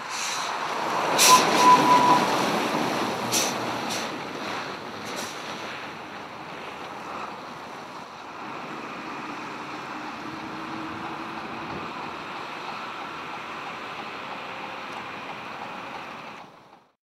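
A truck passing on a rural road, heard as a rushing noise that swells to its loudest about one to three seconds in, with a few sharp clicks. It then settles into a steady, lower rumble.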